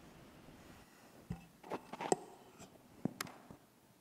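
Several faint knocks and clicks over a couple of seconds: handling noise from microphones being swapped.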